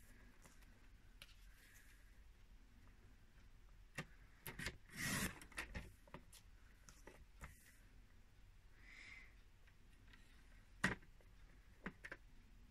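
Quiet handling at a paper trimmer: card stock shifted and squared against the rail, a brief sliding scrape about five seconds in, and two sharp clicks near the end.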